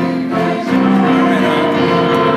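A group of voices singing a hymn together, with sustained held notes.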